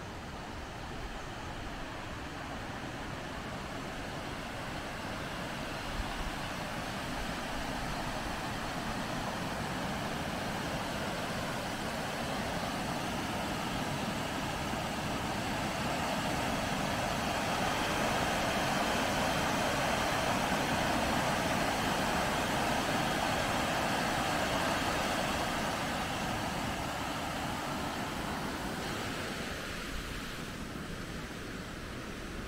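Steady rush of river water pouring over a weir, building up to its loudest a little past halfway and easing off near the end.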